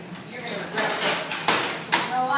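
Plastic Nerf toy blasters being grabbed and handled: a rustling clatter, then two sharp clacks in the second half.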